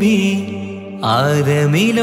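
Malayalam Mappila devotional song (a Nabidina song in praise of the Prophet): a solo voice holds a note over a steady low accompaniment. The note fades briefly about half a second in, and a new rising phrase begins about a second in.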